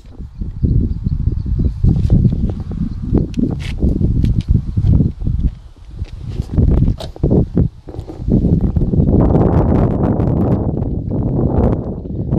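Wind buffeting and handling noise on a camera microphone: an uneven low rumble with scattered clicks and knocks, steadier from about nine seconds in.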